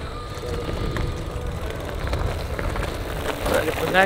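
Mountain bike tyres rolling and crunching over gravel as a rider comes up close, over a steady low rumble.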